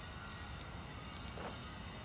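Quiet, steady outdoor background hiss with a few faint, short clicks scattered through it.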